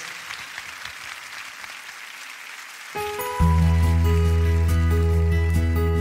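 A live audience applauding. About three seconds in, the band starts a song with long held low bass and keyboard-like notes, which grow louder a moment later.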